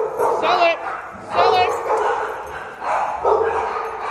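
Dogs barking and yipping in three short bursts a second or so apart.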